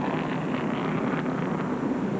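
Stock car engines running steadily at caution pace, a low even hum, with wind noise on the microphone.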